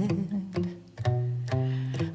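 Steel-string acoustic guitar played between sung lines, a low bass note and chord struck about every half second. The last of a held sung note trails off at the very start.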